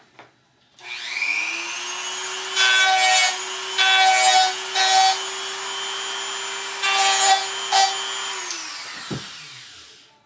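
A small high-speed rotary grinding tool spins up, runs steadily for about seven seconds and winds down. Five louder bursts of grinding come as the bit is pressed into the part, grinding it back so it can sit farther back.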